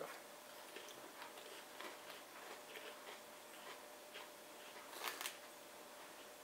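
Faint crunching of crisp snack crackers being bitten and chewed, a run of small crackles with one louder crackle near the end.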